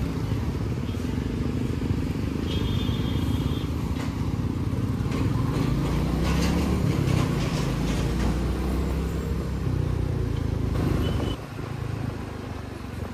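Motorcycle engine running at road speed, its pitch rising and falling as the rider works the throttle through the middle of the stretch. A brief high beep comes about two and a half seconds in, and a shorter one near the end.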